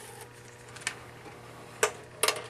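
Two light clicks from the antique Zeno gum machine's porcelain cabinet being handled and lifted, a faint one about a second in and a sharper one near the end, over a steady low hum.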